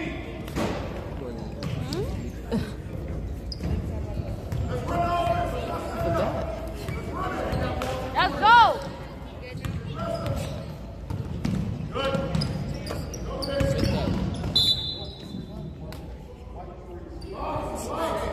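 Basketball bouncing on a hardwood gym floor during play, with short impacts and background voices echoing in the large gym. A single loud, high squeak, rising then falling, comes about halfway through: a sneaker squeaking on the court.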